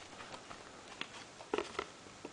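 Handling noise of plastic DVD cases: a few soft, scattered clicks and knocks as the cases are slid out and laid down.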